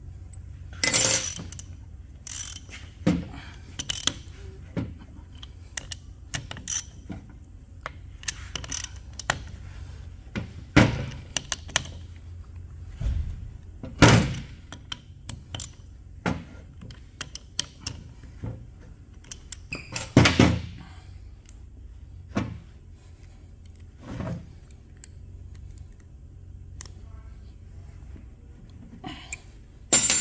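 Hand socket ratchet clicking in short runs as bolts are snugged down, with scattered sharp knocks and clicks of metal tools in between.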